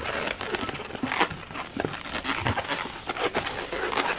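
Inflated pink 260 latex twisting balloon being folded and twisted by hand, the rubber squeaking and crackling against itself and the fingers in a run of short irregular creaks.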